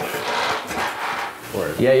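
Pressurised backpack pump sprayer's wand spraying a fine water mist with a steady hiss, which stops about a second and a half in.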